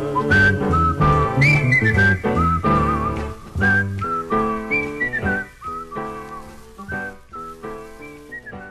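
A whistled melody, sliding and wavering between notes, carries the tune over the soul band's bass, drums and guitar as the record fades out.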